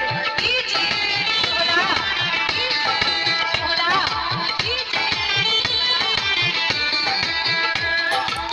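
Loud DJ music played through a large speaker stack: a dense song with deep drum hits several times a second and a lead melody that bends up and down in pitch.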